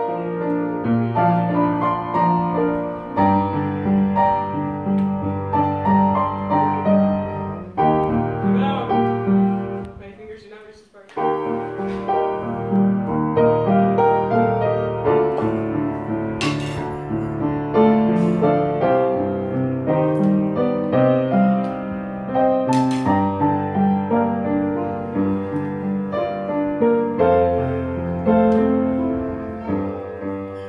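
Upright piano being played at a steady pace, bass notes under a melody, with a short break about ten seconds in before the playing resumes.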